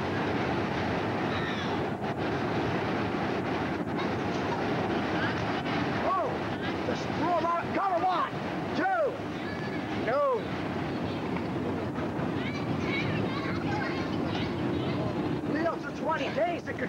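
Steady outdoor background noise on a camcorder microphone, with voices underneath. A cluster of short shouts that rise and fall comes about six to ten seconds in.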